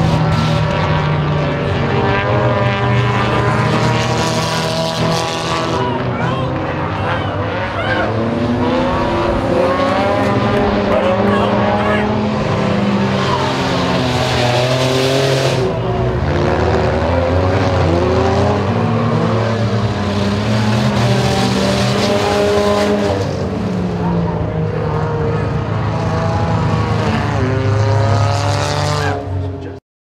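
Engines of several compact dirt-track race cars revving as they race around the oval, their pitch rising and falling continuously. The sound cuts off abruptly near the end.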